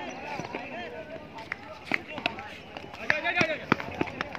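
Men's voices calling out on an open cricket ground, with several sharp knocks and the sound of players running near the end.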